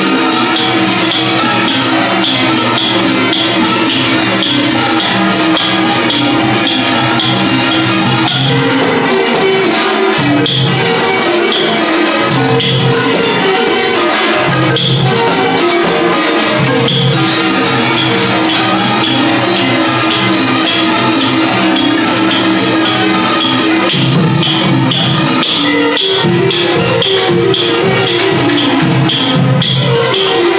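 Thai classical ensemble playing: ranat ek wooden xylophones and khim hammered dulcimers carry a fast continuous melody over a steady beat on Thai barrel drums.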